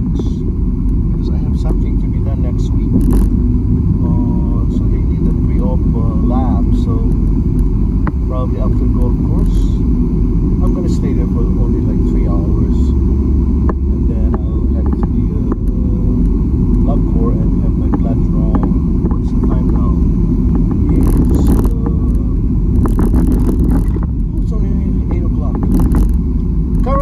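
Steady low road and engine rumble of a car being driven, heard from inside the cabin, with a few short hissy noises near the end.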